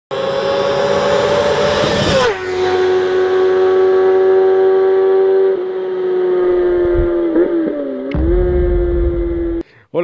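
A high-revving engine held at a steady high pitch, which drops sharply about two seconds in and then holds lower. Near the end the pitch wavers and a low rumble joins before everything cuts off abruptly.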